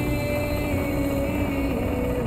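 Live drums beaten with mallets in a fast continuous rumble, a drum kit and a rack of drums together, under steady held notes from a melody instrument; one of the held notes steps down near the end.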